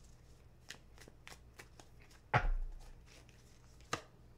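Tarot cards being shuffled by hand: a run of light, quick card flicks, with one louder soft thump a little past halfway and a sharp click near the end as a card is drawn.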